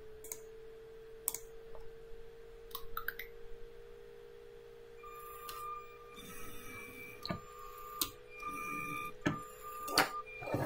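LEGO SPIKE Prime robot's motors whirring in several short bursts in the second half as it drives up to a block and works its lifting arm, with a few small clicks. A faint steady hum runs underneath.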